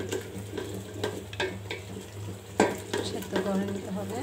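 A wooden spatula scraping and knocking against an aluminium pot as onion, garlic and ginger paste sizzles in oil, fried until the oil comes up. About half a dozen sharp knocks of the spatula, the loudest a little past halfway, sit over a steady sizzle and a low hum.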